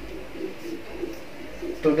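A pigeon cooing softly in the background, a string of short low notes, with a man's voice starting to speak near the end.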